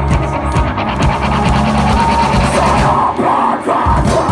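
Live heavy metal band playing loud, with drums, electric guitars and yelled vocals. There are rapid drum hits in the first second, and the low end drops out briefly near the end before the full band comes back in.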